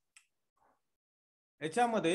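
A pause in a man's speech. There is a faint click just after the start, then near silence, then a short spoken burst from the same voice near the end.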